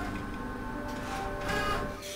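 Wide-format plotter printing a full-size paper pattern, its mechanism running steadily, with background music.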